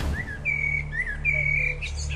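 Bird chirps and short held whistled notes, two quick rising chirps and two longer steady whistles, over a steady low sustained musical drone, with a brief burst of noise at the very start.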